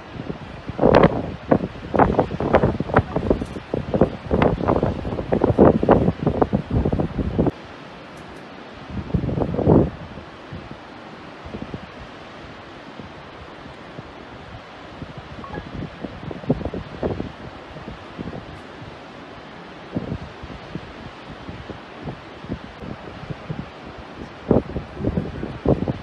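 Wind buffeting a phone's microphone in loud, irregular gusts for the first several seconds and again around ten seconds in, then a steady rushing hiss with occasional lighter buffets.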